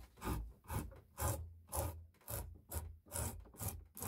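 Stanley No.55 combination plane cutting a moulding along the edge of a wooden board in quick, short strokes, about two a second, each a scrape of the iron peeling off a shaving.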